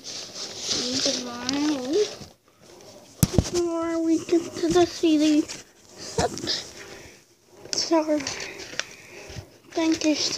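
A high-pitched voice in short phrases separated by pauses, with no clear words.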